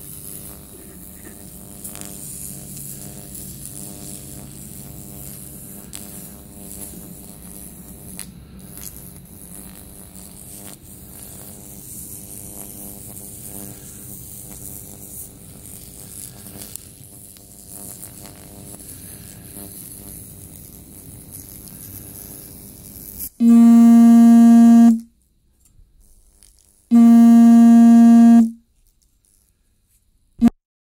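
Steady electrical hum and buzz, with a faint hiss, from a homemade rectifier-powered carbon-brush weld cleaner as the acid-soaked brush is worked over stainless steel welds to clean and passivate them. Near the end, two loud electronic beep tones, each about a second and a half long, with dead silence between them.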